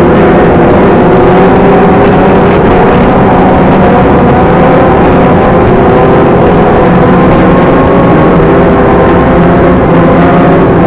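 Several sport-motorcycle engines running together at a steady cruising pace, heard from a moving bike. Their overlapping notes hold fairly level, drifting slowly up and down in pitch, over a constant rush of wind and road noise.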